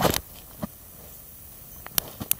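Handling noise: a short rustling bump right at the start, then quiet room with a couple of faint small clicks.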